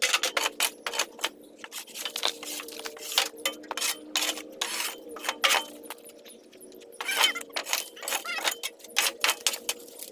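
Metal shovel scraping and clattering into a pile of broken wood, sheet metal and yard debris, loose pieces rattling and clinking in quick irregular strikes, with a brief lull around six seconds in.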